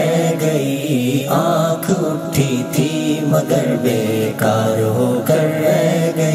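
Music: wordless layered voices chanting a sustained, slowly moving melody, an interlude in a sung Urdu ghazal.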